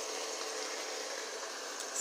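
Chicken pieces sizzling in hot oil and soy-lime marinade in a pot, a steady sizzle with no breaks.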